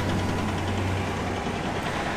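An engine running steadily at idle: an even low hum with a wash of noise over it.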